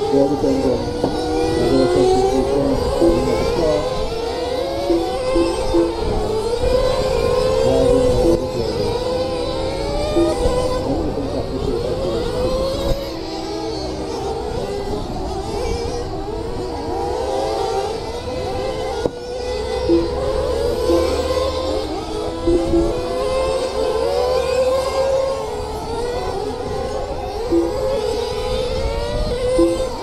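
Several radio-controlled race cars running laps together, their motors whining and rising and falling in pitch as they throttle up and brake. Short beeps sound now and then.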